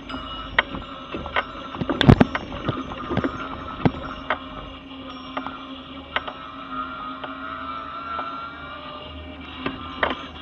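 Mobility scooter moving along a pavement: a steady electric motor whine, with frequent short knocks and rattles from the ride, the loudest about two seconds in.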